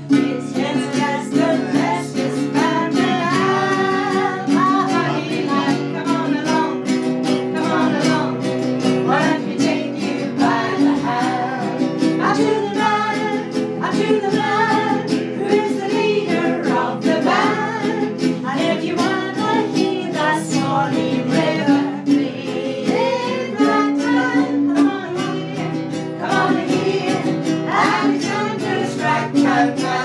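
Several people singing an old song together, accompanied by guitar.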